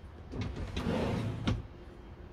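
A kitchen fitting slides for about a second and stops with a sharp click, like a drawer, cupboard or cover being moved and shut.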